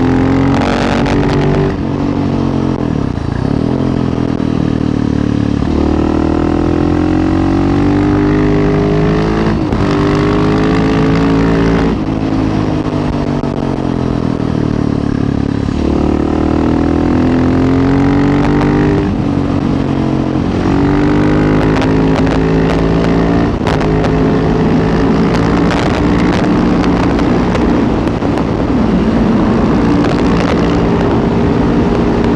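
Husqvarna 701 Supermoto's single-cylinder engine under hard riding. Its pitch climbs repeatedly as it accelerates, then drops back at each shift or roll-off.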